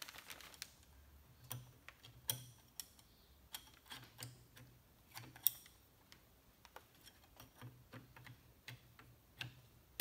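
Scattered light clicks and knocks of metal parts on an SKS rifle being handled and fitted during reassembly, irregular, with one sharper click about five and a half seconds in.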